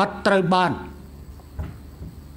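A man speaking Khmer into a podium microphone: a short phrase, then a pause.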